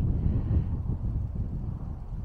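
Wind buffeting the camera's microphone: an uneven, gusty low rumble.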